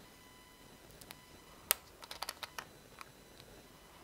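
Screw cap of a small glass hot-sauce bottle being twisted open: a sharp click about halfway through, then a quick run of small clicks.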